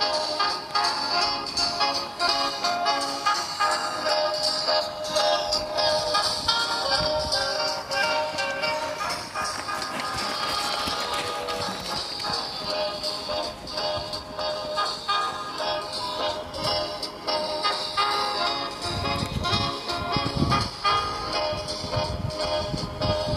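Music playing throughout.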